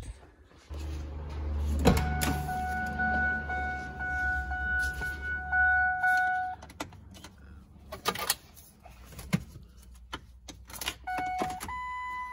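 Clicks and knocks as the truck's door and ignition switch are worked. A steady electronic warning tone from the cab sounds for about four seconds, over a low hum, and a second short tone sounds near the end as the key goes to on.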